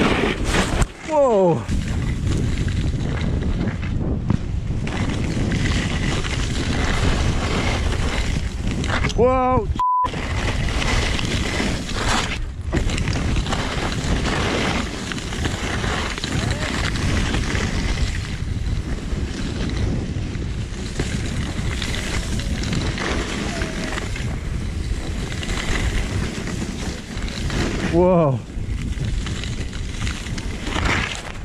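Steady rush of wind on a chest-mounted action camera and ski-bike skis sliding over snow on a downhill run. It is broken by a few short wordless vocal whoops: about a second in, near the middle and near the end.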